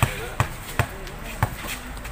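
Basketball dribbled on a concrete court: four sharp bounces about half a second apart.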